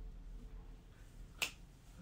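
A single finger snap about one and a half seconds in, over quiet room tone.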